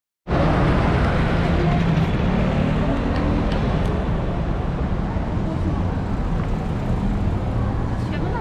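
Busy city street ambience: steady traffic noise from cars and scooters, with indistinct voices of passers-by.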